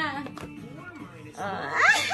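A woman's voice breaks into a high, wavering excited cry near the end, an outburst of joy close to laughing or tearful, over faint music from a children's TV cartoon.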